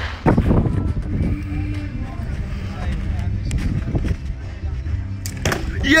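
A steady low rumble of wind on the microphone. Near the end comes a sharp knock as an arrow from the archery bow strikes the target.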